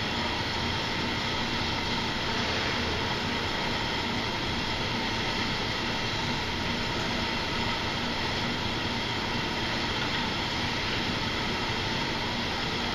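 Steady, even whirring of many indoor cycling bikes' flywheels spinning as a class pedals.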